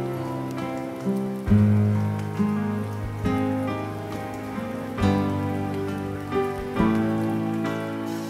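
Slow, gentle instrumental background music, with chords struck about every two seconds and left to ring and fade.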